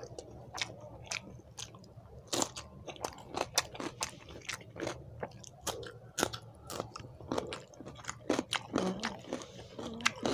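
Close-up chewing of a mouthful of rice eaten by hand, with irregular sharp clicks and smacks from the mouth several times a second.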